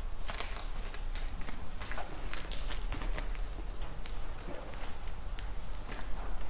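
Scattered soft rustles and light steps of a young calf's hooves on a straw-bedded barn floor, over a low steady rumble.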